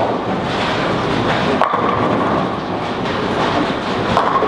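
Bowling-centre din: a bowling ball rolling down the lane over a steady rumble of balls and pins from the other lanes, with one sharp clack about one and a half seconds in.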